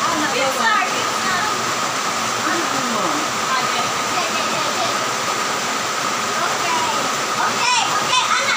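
Young women laughing and talking in short bursts, around a second in, near three seconds and again near the end, over a loud, steady rushing noise with a faint constant tone.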